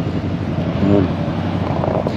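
A steady low mechanical hum, with a man's brief murmur about a second in.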